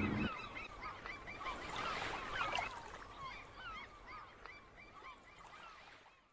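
Many seagulls calling in short, overlapping cries over the hiss of ocean surf, fading out toward the end.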